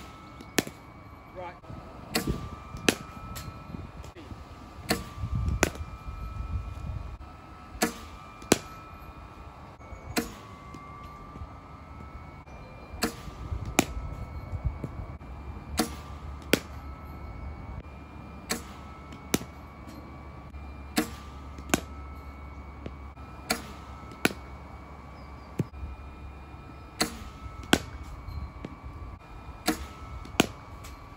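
A cricket bowling machine delivers balls to a batsman every two to three seconds. Each delivery gives a pair of sharp cracks about two-thirds of a second apart: the machine launching the ball and the bat striking it. A faint steady whine runs beneath.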